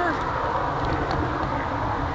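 Wind buffeting the microphone: a steady rushing with a fluttering low rumble.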